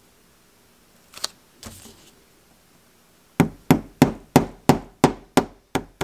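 Small hammer tapping a steel pivot pin down into a straight razor's pivot hole: eight quick, sharp metallic taps, about three a second, starting just past the middle. A couple of light clicks come earlier, about a second in.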